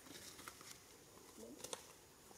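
Near silence: faint ambient hiss with a few soft clicks, and a couple of sharper ticks near the end.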